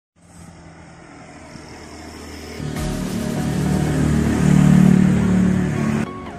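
A motor vehicle's engine approaching, getting steadily louder with a jump in level about two and a half seconds in, and loudest near the end.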